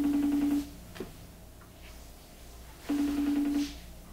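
A low electronic beep tone, just under a second long, sounding twice about three seconds apart over a steady low background hum, with a short knock about a second in.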